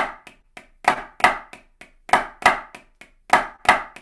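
Drumsticks on a practice pad playing hand-to-hand sixteenth notes with a flam on the fourth note and on beat one, the flams heard as pairs of loud strokes about a third of a second apart, repeating about every 1.2 s with quieter strokes between. Both flams are accented, the left-hand one included, which makes the pattern sound a bit forced: the left-hand flam should be soft.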